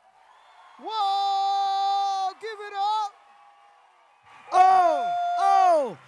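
A single voice calling out long, drawn-out whoops: one held call lasting about two seconds that begins about a second in, then two shorter held calls near the end that each fall away in pitch.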